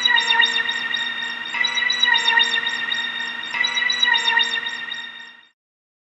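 Doctor Who-style regeneration sound effect: a shimmering electronic tone over a steady hum, with twinkling high notes pulsing a few times a second and the phrase repeating about every two seconds, fading out shortly before the end.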